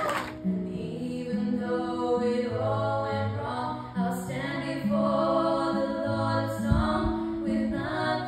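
Two young voices singing long held notes in harmony, with acoustic guitar accompaniment. A short low thump comes about two-thirds of the way through.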